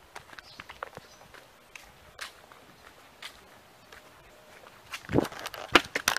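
Footsteps on muddy, gravelly ground, a scatter of soft irregular crunches. Near the end come a couple of much louder sounds.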